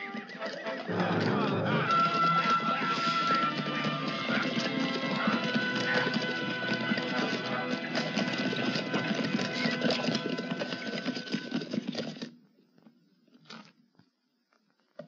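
A band of horses galloping off together, with hoofbeats and neighing under film score music. It all cuts off suddenly near the end.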